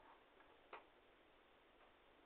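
Near silence: faint steady hiss with a few small clicks, one clearer click about three quarters of a second in.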